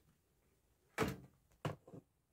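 Two short handling knocks about two-thirds of a second apart, the first louder and longer.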